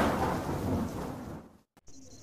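Thunder with rain, a sound effect: a loud clap at the start that dies away over about a second and a half, then cuts off.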